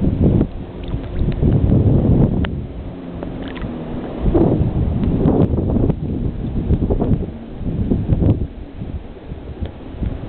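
Gusty wind buffeting the microphone: a low rumble that swells and fades every second or two.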